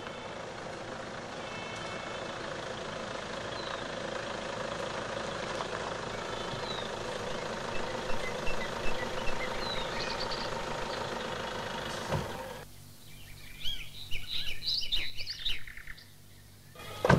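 A Toyota Innova's engine idling steadily, with birds chirping over it. The engine cuts off suddenly about twelve seconds in, leaving birdsong.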